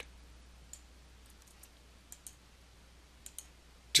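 Faint, scattered computer mouse clicks and keystrokes, some in quick pairs, as new width and height values are entered.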